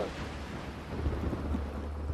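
Low rolling thunder over a steady hiss of rain.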